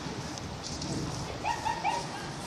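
Steady seaside wind and surf noise, with an animal's three quick yelping calls near the end.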